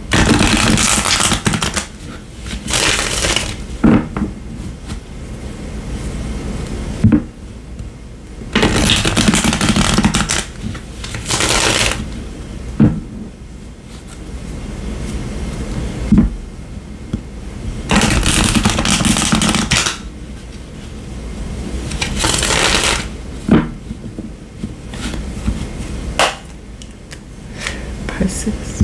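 Tarot deck being riffle-shuffled by hand, again and again: a rapid flutter of cards lasting a second or two every few seconds, with sharp knocks between the riffles as the deck is squared.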